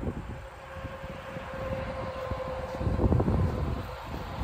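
A steady engine drone holding one even pitch, with a low rumble of wind on the microphone about three seconds in.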